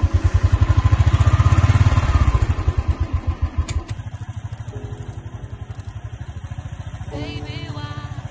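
Royal Enfield Thunderbird 350's single-cylinder engine thumping as the bike pulls away and rides along. It is loudest under throttle for the first few seconds, then eases to a quieter, even beat.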